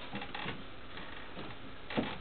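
Camera handling noise: a few light, scattered clicks and rustles over a steady outdoor background hiss, with the loudest click near the end.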